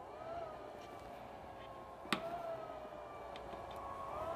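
Steady whine of the fan in Apple's heated display removal press, with its pitch lifting briefly twice. There is a sharp click about two seconds in.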